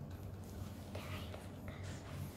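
Soft rustling clicks of a plastic 4x4 speed cube being turned quickly by hand, over a low steady hum.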